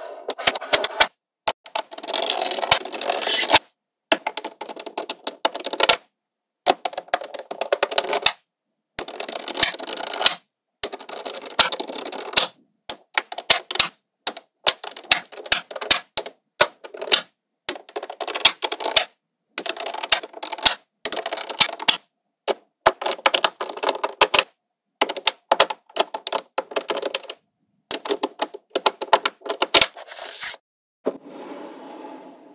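Small metal magnetic balls clicking and snapping together as they are pressed into place and rearranged by hand, in quick clattering runs of clicks broken every few seconds by short spells of silence.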